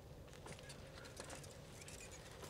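Bicycles rolling past on a road, faint: irregular small clicks and ticks over a low steady rumble.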